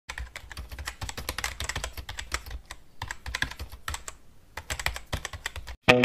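Rapid computer-keyboard typing: a dense run of uneven key clicks, pausing briefly twice and stopping just before the end.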